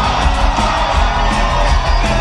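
Live rock band playing loudly through a club PA, heard from within the audience: electric guitar over bass and drums.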